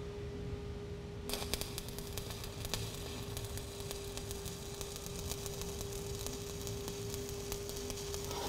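Stick (SMAW) welding arc from a 7018 electrode at 85 amps on steel pipe: struck about a second in, then a steady, dense crackle of fine pops as the bead is run. A steady hum sits underneath.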